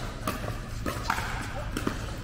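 Irregular hollow knocks of pickleballs being hit and bounced around an indoor pickleball hall, a few each second, echoing, over faint voices.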